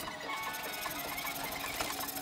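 Handsaw cutting through a pressure-treated board in rapid, even back-and-forth strokes.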